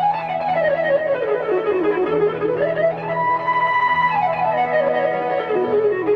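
Electric guitar soloing in fast, Middle Eastern-flavoured runs that sweep down and back up, with one high note held for about a second midway, over a steady low drone.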